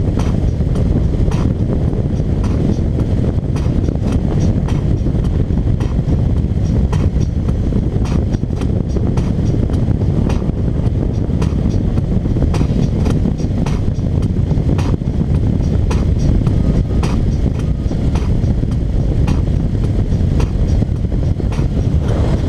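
Motorcycle riding at road speed: a steady low rumble of wind on the microphone, engine and tyres, with frequent short crackles throughout.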